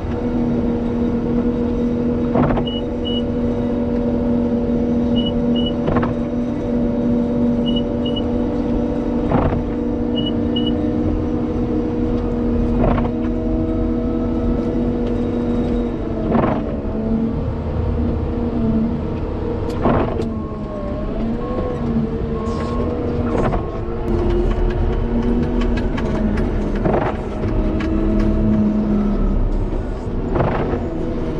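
Caterpillar 930M wheel loader's diesel engine running steadily under load while it pushes snow, with a steady hum that wavers and shifts in pitch from about halfway, as the machine turns. A sharp knock comes about every three and a half seconds, and faint paired high beeps sound in the first few seconds.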